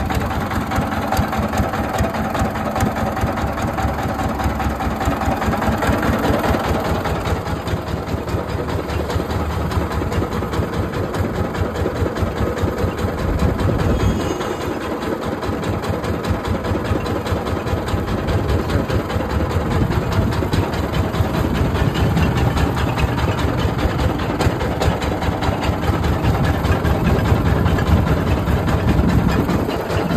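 Single-cylinder stationary diesel engine running steadily with a rapid chug, driving a sugarcane crusher's rollers through a flywheel and belt as cane is fed in.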